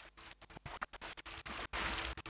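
Channel ident music: choppy electronic sound effects with a record-scratch texture, cut into short bursts several times a second.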